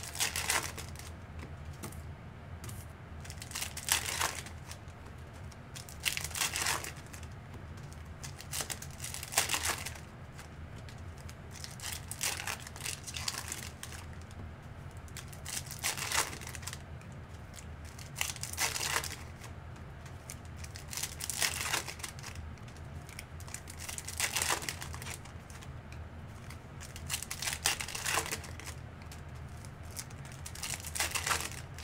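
Trading-card pack wrappers crinkling and tearing as packs are opened one after another, a short crinkle every two to three seconds over a low steady hum.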